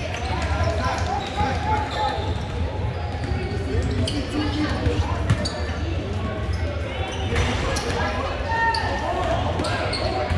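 Basketball bouncing on a hardwood gym floor amid the chatter of players and spectators, with sharp knocks scattered through and the hall's echo behind it.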